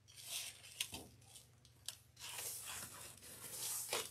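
Soft rustling and sliding of a long fabric ribbon being pulled out and handled over a cutting mat, with a light tick about two seconds in.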